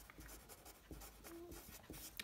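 Faint, quick strokes of a Sharpie felt-tip marker writing on a white sheet.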